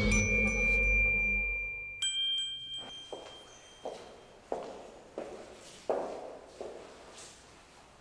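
A music sting with ringing chime tones over a low rumble fades out, and a second chime strike rings about two seconds in. Then come footsteps on a tiled floor, about one every 0.7 seconds, growing fainter.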